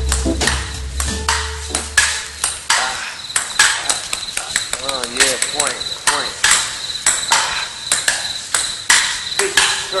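Turntable scratching of short chopped sound snippets in a hip-hop track: quick sharp cuts and clicks, with wavering pitch sweeps. The deep bass line drops out about three seconds in.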